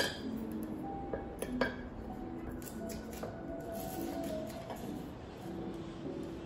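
Knife and fork clinking and scraping on a ceramic plate while cutting, with a few sharp clicks about a second and a half in, over background music.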